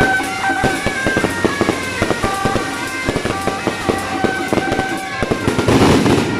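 Fireworks crackling and popping in rapid, dense succession over music. A thicker, louder burst of crackling comes near the end.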